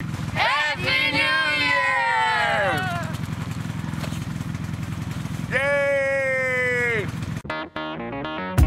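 Several voices shouting together in one long call that slides down in pitch. A couple of seconds later a single long held call drops off at its end. A steady low engine drone runs underneath until shortly before the end.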